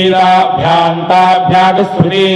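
Vedic Sanskrit chanting in the ghana style, where words are repeated in set back-and-forth patterns. It is held almost on one pitch, with a break between syllables about every half second.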